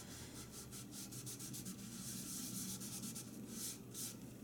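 Small cloth rubbing on the chalk-painted surface of a watering can in faint, quick, repeated strokes, wiping away ink from an inkjet-printed image transfer.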